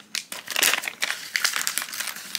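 Foil blind-bag pouch crinkling as it is torn open by hand, a dense run of irregular crackles starting about a third of a second in.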